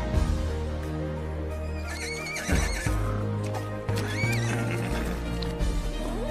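A young horse whinnying twice, high-pitched and wavering, about two and four seconds in, over background film music.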